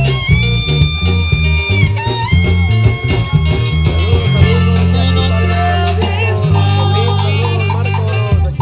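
Live band dance music over loudspeakers: an accordion holding long notes, then playing a busier melody, over a heavy bass line and drums.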